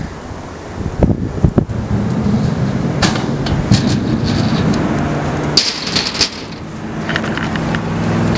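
Stunt scooter rolling on a concrete skatepark ramp, its wheels giving a low rolling hum broken by a string of sharp clacks and knocks from the wheels and deck striking the concrete, the loudest about six seconds in.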